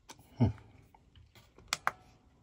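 Buttons on a diesel air heater's LCD control panel being pressed: a few short, sharp clicks, a louder one about half a second in and two in quick succession near the end.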